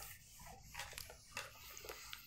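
Faint, short rubbing strokes of a whiteboard being wiped clean, a few soft swipes about a second in.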